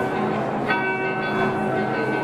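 Live acoustic guitar chords ringing out through the hall's PA, with a fresh chord struck about two-thirds of a second in.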